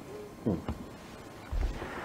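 A brief low 'mm' from a person close to the microphone, falling steeply in pitch about half a second in, followed by a light click and a soft thump near the end.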